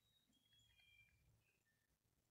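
Near silence, with a few faint, short, high bird notes in the first half.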